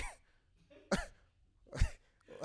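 A person coughing three short times, about a second apart.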